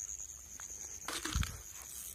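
Rustling and a soft thump about a second in, from someone moving through tall grass, over a steady high-pitched chirring of night insects.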